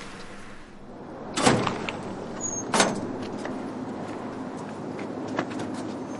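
A door being opened: two sharp knocks about a second and a half apart, then a few faint clicks over steady room noise.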